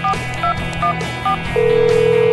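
Phone keypad tones: four short two-note beeps about half a second apart as a number is dialled, then a long steady tone begins about one and a half seconds in, the call ringing out. Background music plays underneath.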